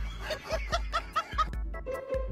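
A person laughing in a quick run of about five short bursts, over background music with a steady beat.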